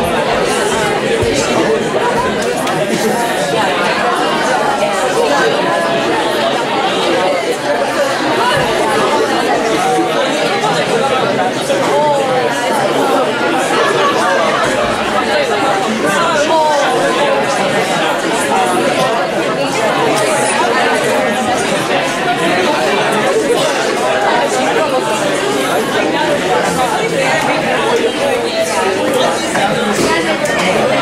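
Many students talking at once in a large lecture hall: a steady babble of overlapping conversations with no single voice standing out.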